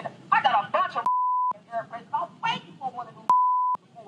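Two censor bleeps, each a steady high beep about half a second long, blotting out profanity in a man's shouted speech through a megaphone. The first comes about a second in, the second near the end, and the voice is cut out completely under each.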